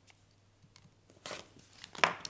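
Rotary cutter slicing through layered cotton quilt fabric along an acrylic ruler on a cutting mat: one short, crisp cut a little over a second in, with faint ticks of the blade and ruler after it.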